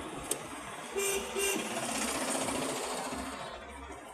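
Steady city traffic and road noise heard from inside a moving vehicle, with a vehicle horn giving two short honks in quick succession about a second in.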